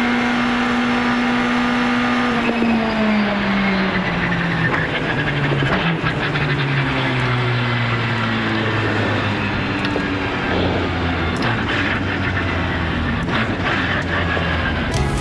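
Rally car engine heard from inside the cockpit, holding a steady note and then, from about two seconds in, dropping in pitch in several steps as the car slows down after crossing the stage finish. It then settles into a low, steady note.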